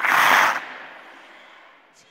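A video transition whoosh: a sudden burst of rushing noise that peaks for about half a second and then fades out over the next second or so.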